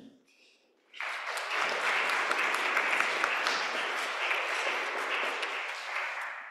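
Congregation applauding, beginning about a second in after a brief silence and tapering off near the end.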